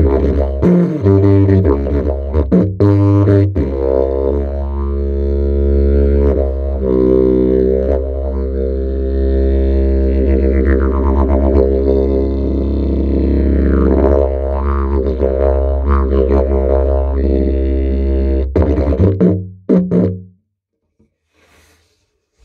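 A Paul Osborn didgeridoo played as a deep, steady drone: rhythmic pulsed notes for the first few seconds, then a long held drone with overtones sweeping up and down. It stops about 20 seconds in.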